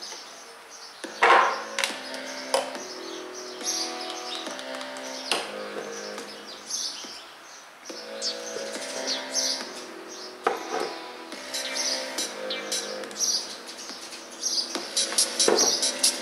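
A song playing through the speaker of a homemade Raspberry Pi MP3 player: held notes that change about once a second, with sharp percussive hits, and almost no bass.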